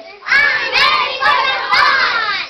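A group of young children shouting out together, loud, starting about a third of a second in.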